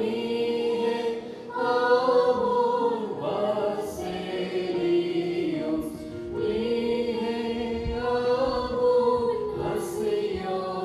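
A group of voices singing a slow liturgical chant in long, drawn-out phrases, the pitch gliding between held notes, with short breaths between phrases about one and a half, three and six seconds in.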